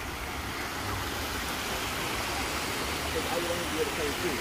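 Water spilling over a small stone weir into a pond: a steady rushing splash of falling water.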